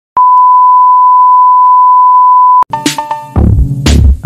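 A steady, loud, high-pitched test tone, the reference tone that goes with colour bars, cuts off abruptly about two and a half seconds in. Electronic music follows straight after: a few short synth notes, then a heavy beat kicking in near the end.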